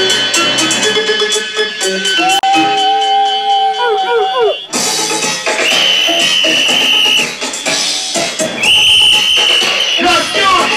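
Dub music played loud over a sound system. A fast tick pattern runs under a held tone that bends downward and drops out about four and a half seconds in. Then a sudden wash of effects comes in, with a high held tone sounding twice.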